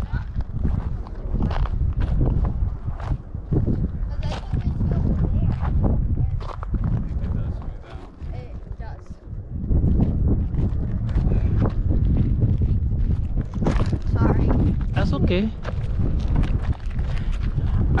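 Footsteps crunching irregularly on a gravelly lava-rock trail, over a heavy low rumble of wind on the microphone.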